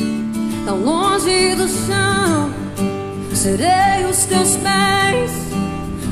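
A woman singing live over acoustic guitar, her voice sliding up into long held notes about a second in and again a little past the middle.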